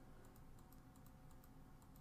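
Near silence: room tone with faint, rapid clicks.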